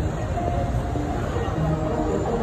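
Steady rumble of city street traffic.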